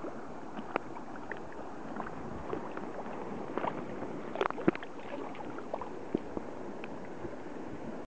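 Flowing river water around a wading angler, with scattered small splashes from a hooked brown trout thrashing at the surface as it is brought to the net; the loudest splashes come in a cluster about four and a half seconds in.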